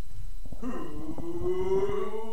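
A man's long drawn-out howl, starting about half a second in and slowly rising in pitch.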